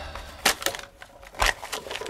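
A few sharp, irregular crackles and clicks of a paper being crumpled and handled in the hands, in two short clusters.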